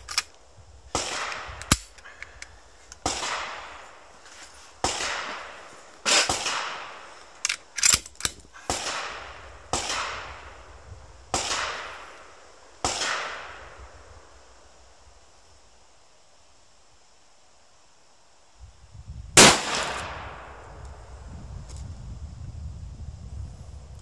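Rifle gunshots at a range: about a dozen shots with echoing tails over the first half, then a quiet spell. Then one much louder, sharper shot comes about three-quarters of the way in, from the .308 ATA ALR bolt-action rifle close at hand, firing Hornady Steel Match.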